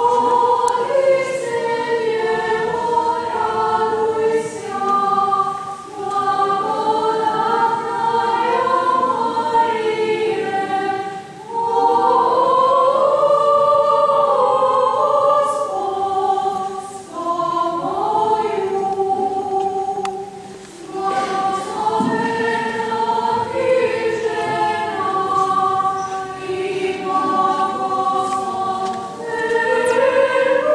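Mixed choir of men and women singing unaccompanied in several-part harmony. The long held phrases are broken by brief pauses for breath.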